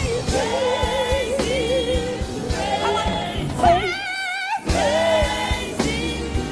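Live gospel praise song: lead and backing voices singing with wide vibrato over band accompaniment. About four seconds in, the bass and drums drop out for under a second while a high voice holds a wavering note, then the band comes back in.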